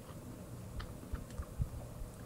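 Faint, scattered small clicks and soft low thumps: handling noise as a slice of pizza is picked up.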